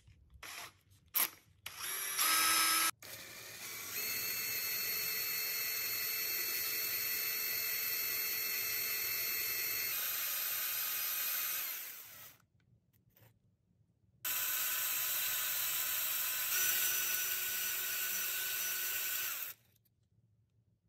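Cordless drill spinning a small turned metal part while sandpaper is pressed against it: a steady motor whine with a sanding hiss. It runs once for about eight seconds, stops, and runs again for about five seconds after a short pause. A few sharp clicks and a brief burst of the drill come first, as the part is tightened in the ratcheting chuck.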